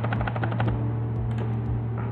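A rapid string of small clicks from computer input, of the kind made by keys or a mouse, that thins to a few scattered clicks after about half a second. A steady low electrical hum runs underneath.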